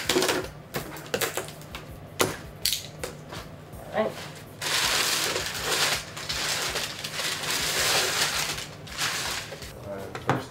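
A large cardboard box being opened, with scattered sharp tearing and knocking sounds. About halfway through comes a long stretch of crumpled brown packing paper rustling and crinkling as it is pulled out of the box.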